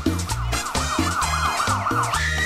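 Live tropical dance band playing, with a steady bass-and-drum beat. A warbling siren-like tone rises and falls about five times a second over the music.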